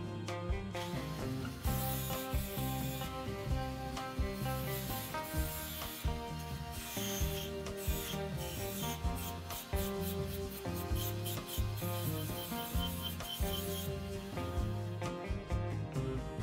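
A small right-angle rotary tool with a sanding disc grinding against a steel spoon. It makes a high rasping hiss from about a second and a half in until shortly before the end. Background music plays underneath.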